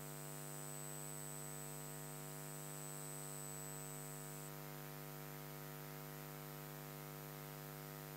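Steady electrical mains hum. A faint high-pitched whine cuts off about halfway through.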